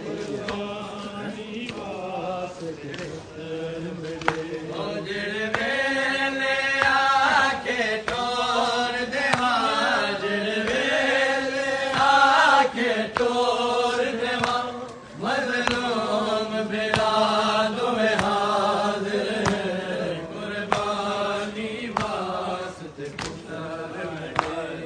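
A group of men chanting a noha (Shia lament) in unison, the melody rising and falling in long held lines, over sharp chest-beating (matam) strikes about once a second.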